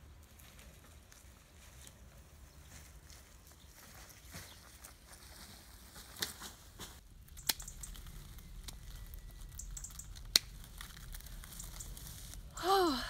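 Faint rustling of dry brush and leaves, with a few sharp snips of hand pruning shears cutting stems in the second half, the loudest near the end.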